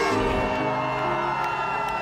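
Concert crowd shouting and cheering over a sustained chord held by the band.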